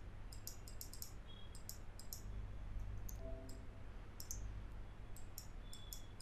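Computer mouse button clicking in quick irregular runs, several clicks a second, with a short pause midway, over a low steady hum.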